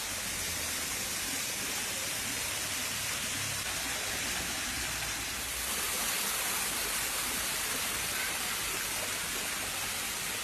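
Steady rush of falling water, an even hiss with no breaks.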